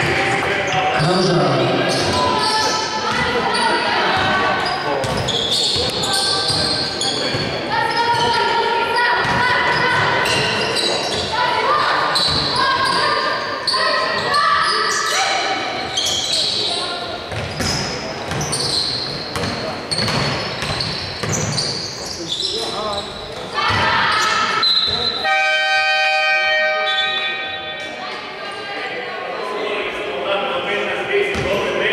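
A basketball bouncing on a wooden gym floor during play, with players calling out, echoing in a large sports hall. Late on, a steady horn-like buzzer sounds for about two seconds.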